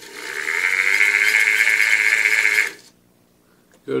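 Vacuum cleaner motor (a brushed universal motor with its fan) spinning up on 19.5 V from a laptop adapter: a steady whine rising in pitch as it gets up to speed, running for about two and a half seconds, then stopping quickly when the wire is taken off. It runs, though at lower speed than on mains, showing the repaired motor works.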